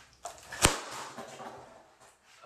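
A plastic water bottle knocking once, sharply, against a hard surface about two-thirds of a second in, with a few light clicks of handling just before it and faint rustling after.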